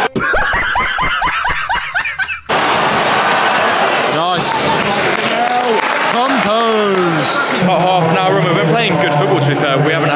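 A man laughing in quick repeated bursts for about two and a half seconds. It cuts off suddenly, and then comes the din of a football crowd: many voices shouting and chanting together.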